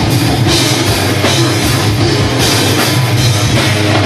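Live heavy metal band playing loud and without a break: distorted electric guitars over a drum kit with cymbals.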